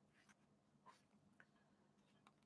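Near silence: room tone, with a couple of very faint short ticks.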